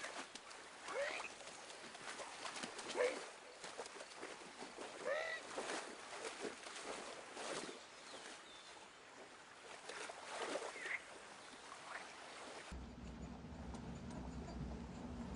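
Splashing and rustling of wet clothing in shallow river water, with several short chirping animal calls scattered through. About a second before the end, a car engine's steady low hum takes over, heard inside the cab.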